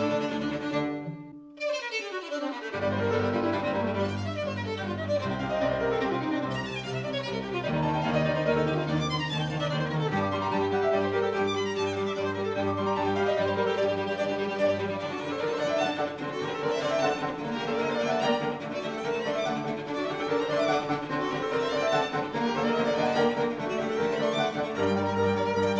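Piano trio of violin, cello and grand piano playing classical music, with the violin carrying the melody. The sound drops away briefly about a second and a half in, then the music carries on.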